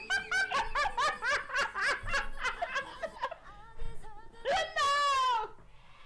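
Women laughing hard: rapid bursts of laughter for about three seconds, then a long, high, falling squeal near the end.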